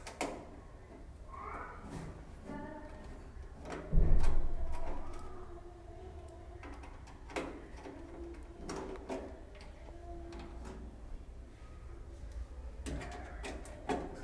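Screwdriver working the screws out of the back of a steel desktop computer case: scattered metal clicks, scrapes and short squeaks from the screws turning. A loud low thump comes about four seconds in.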